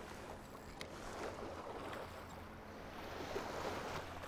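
Faint, steady noise of small waves washing at the shoreline with light wind on the microphone, and one faint click about a second in.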